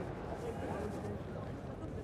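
Indistinct voices over a steady murmur of the arena crowd.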